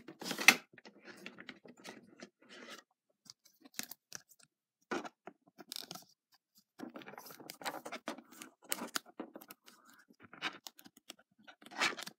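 Trading card being slid into a rigid plastic top loader: irregular plastic scrapes, rustles and clicks from handling the holder, with the loudest click about half a second in.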